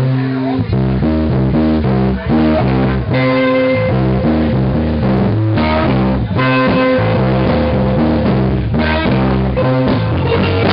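Electric guitar, a Gibson ES-335 through a Fender Bassman amp, playing a repeating blues riff with bass notes underneath.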